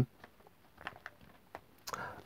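Faint handling noise: a few soft, scattered clicks and taps as vinyl records and their sleeves are moved about on a desk.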